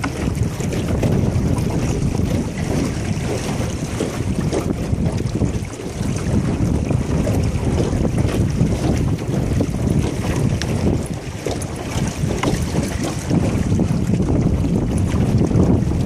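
Wind buffeting the microphone and water splashing along the hull of a small aluminium boat moving across a lake, a steady rushing noise.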